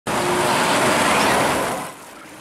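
Road traffic noise from motor vehicles and motorcycles: a loud, even rush that drops away near the end.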